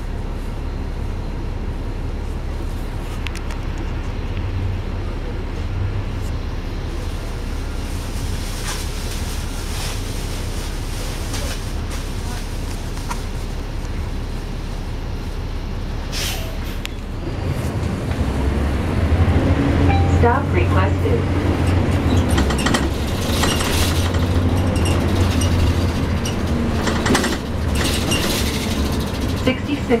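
Diesel engine of a NABI 416.15 suburban-style transit bus heard from the front seat, idling steadily while the bus stands still. About seventeen seconds in, it revs up and gets louder as the bus pulls away.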